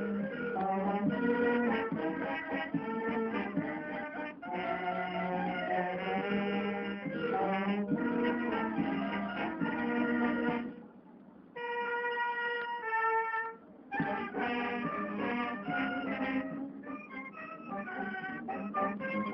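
A Mexican wind band (banda filarmónica) playing a waltz with full ensemble. About eleven seconds in the band drops back to a few held notes for a couple of seconds, then the full band comes back in.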